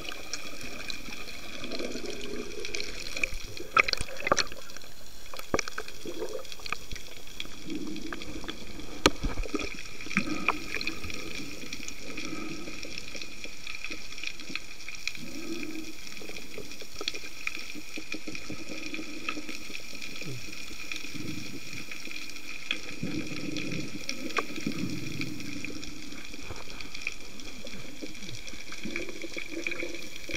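Underwater sound through a camera housing: a steady hiss with muffled, uneven sloshing of moving water, and a few sharp clicks about four and nine seconds in.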